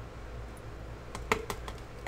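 Light plastic clicks and taps of a paint bottle handled against a plastic mixing container, a quick cluster of about four a little past the middle, over a low steady room hum.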